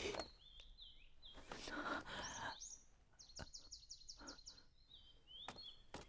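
Small birds chirping, with a quick trill of about eight repeated notes in the middle. A soft rustling noise comes about two seconds in.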